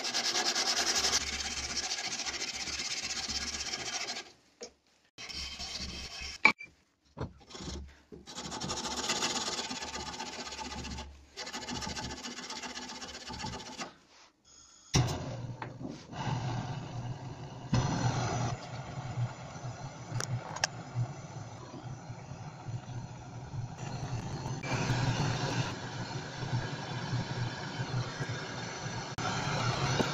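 Sandpaper rubbed by hand over a steel axe head cut from an old saw blade, in spurts of strokes with short pauses. About halfway through, a butane blowtorch on a gas canister is lit and burns with a steady hiss as the steel blade is heated in its flame.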